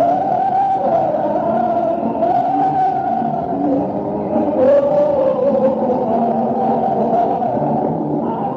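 Lo-fi live concert audio recorded from the audience in a large hall: a dense, distorted wash with sustained, slowly wavering held notes.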